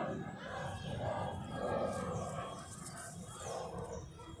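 Indistinct, muffled voices talking, with no words that can be made out.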